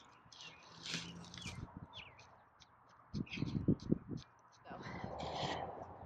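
Wooden stake being pushed down through a straw bale: dry straw crackling and rustling in many short bursts.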